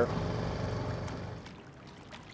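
Mercury outboard motor idling with a low, steady hum that fades away about one and a half seconds in, leaving faint background noise.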